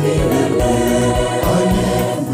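Large mixed choir of women's and men's voices singing a gospel song together, with a steady low beat beneath the voices.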